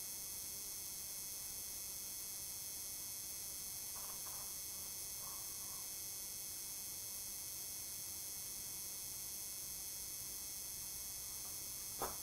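Quiet room tone: a steady hiss with several faint, high steady tones through it, and two faint short sounds about four and five seconds in.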